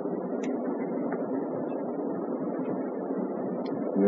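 Steady low background rumble with a few faint clicks.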